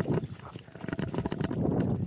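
Enduro mountain bike riding down a rough dirt trail: tyres rolling over dirt and stones, with a rumble and a dense run of clicks and knocks from the bike over the bumps, a little quieter for a moment in the first half.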